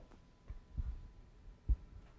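Three dull, low knocks, the loudest near the end, over a faint steady tone.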